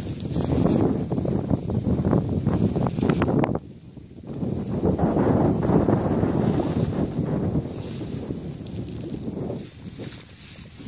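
Wind buffeting the microphone in gusts, a low rumbling noise that drops away briefly about four seconds in.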